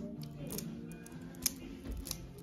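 Background music, with several sharp clicks of plastic clothes hangers being pushed along a clothes rail, the loudest about one and a half seconds in.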